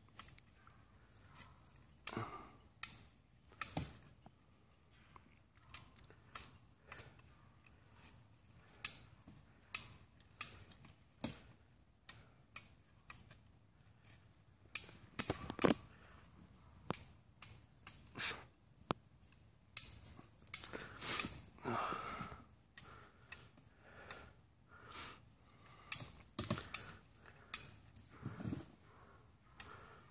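Irregular sharp metallic clicks, about one or two a second and sometimes in quick clusters, from a ratcheting hand winch (come-along) being worked with a long pipe handle to pull on the pool wall. A few longer grating sounds come around the middle and late in the stretch.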